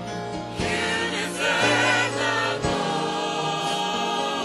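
Gospel vocal ensemble singing together in harmony over instrumental backing that holds steady low notes.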